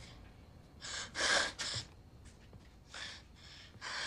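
A person's gasping breaths: three sharp breaths in quick succession about a second in, then two more near the end.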